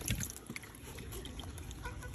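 Wet fish being handled: a soft knock right at the start, then faint small wet clicks and ticks as the slippery mullet are picked up and turned over.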